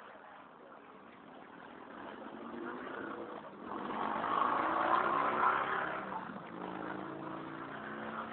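A motor vehicle passing: its sound builds to a peak about four to six seconds in, then fades.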